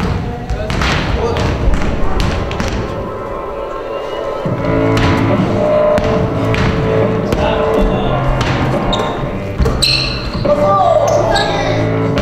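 Basketball bouncing on a hardwood gym floor during play, repeated sharp thuds in a large reverberant hall, with voices. Music with sustained notes comes in about four and a half seconds in and plays on under the game.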